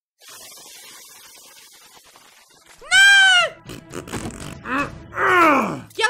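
Cartoon battle sounds: a quiet hiss for the first two seconds, then a loud wordless cry that rises and falls about three seconds in, a rough noisy stretch, and a groaning cry that slides down in pitch near the end, as a creature is hit by an attack.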